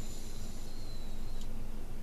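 Ford pickup's engine running, a steady low hum in the cab. A faint high whine sounds over the first second and a half and ends in a light click.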